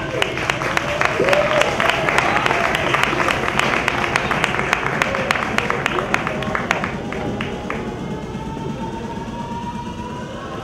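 Audience applause with some cheering, thinning out and dying away about seven to eight seconds in.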